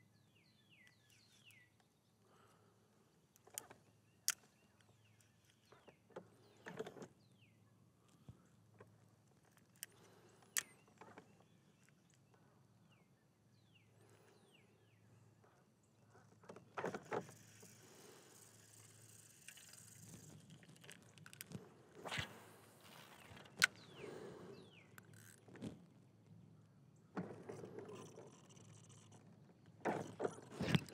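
Faint, scattered clicks and light knocks of handling noise, then from about halfway through, stretches of soft rustling and scraping with a few more knocks.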